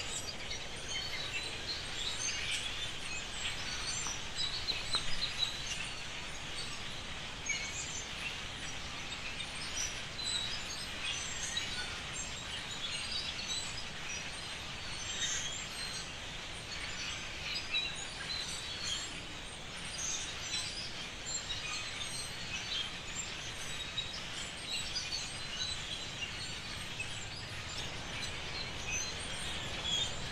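A cacophony of many birds calling at once, a dense run of short chirps and calls that keeps going throughout, over a steady background hiss.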